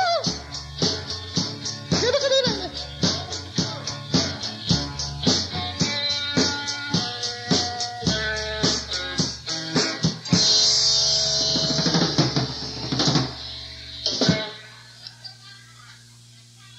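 Live rock band with drum kit and electric guitar playing the close of a song over a steady beat. About ten seconds in it lands on a final held chord with ringing cymbals, which is cut off sharply a few seconds later, leaving quiet room sound.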